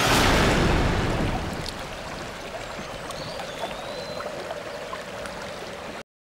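A loud rushing noise swells at the start and fades over about two seconds into a quiet, steady hiss with a faint held tone, a few small ticks and a brief high whistle near the middle. The sound cuts off abruptly at the end.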